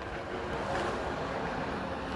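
Wind rushing over the microphone, a steady noise with no distinct events.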